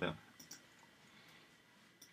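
Two faint, short clicks from working the computer about half a second in, then quiet room tone with a thin steady high whine.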